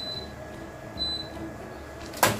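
Two short, high electronic beeps about a second apart, over a low steady room hum.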